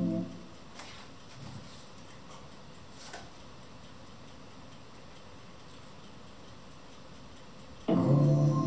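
Synthesizer keyboard played through a small speaker: a held chord cuts off just after the start, then a long pause with only faint background hiss and a few soft clicks, and a new chord comes in sharply near the end.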